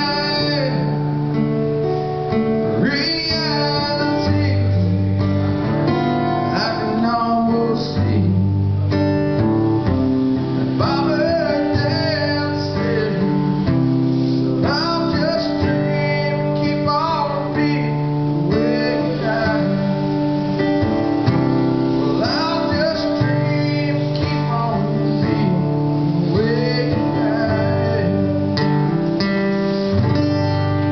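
Acoustic guitar strummed, with a voice singing over it: an acoustic country song.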